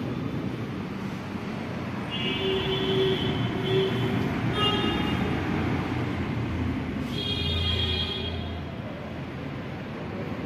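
Steady traffic noise with pitched tones, like vehicle horns, sounding three times: at about two seconds in, briefly near the middle, and again at about seven seconds in.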